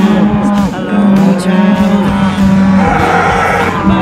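Cattle mooing close by: a few long calls, each held on one steady pitch, with music underneath.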